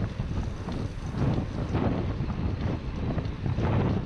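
Wind buffeting the microphone of an action camera on a moving bicycle: an uneven, gusting low rumble.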